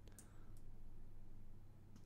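A couple of faint clicks from a computer mouse and keyboard near the start, over a low steady room hum.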